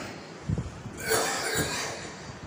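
A man coughing into a microphone: a short burst about half a second in, then a longer, louder breathy cough about a second in.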